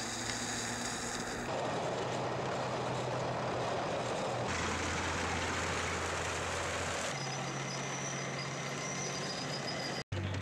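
Tracked armoured vehicles moving along a road: a steady low engine hum under a broad rushing noise. The sound changes abruptly about a second and a half, four and a half and seven seconds in.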